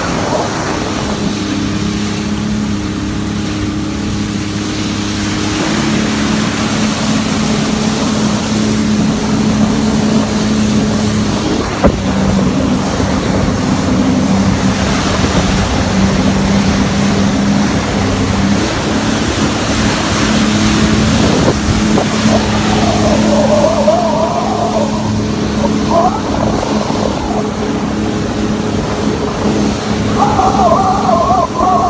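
Jet ski engine running at speed, a steady drone, with rushing wind and water spray over it.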